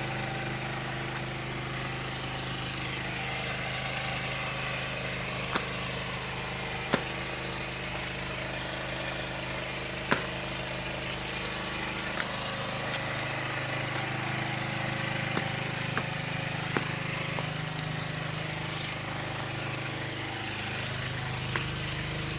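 A small engine running steadily with an even hum, and a few brief clicks over it.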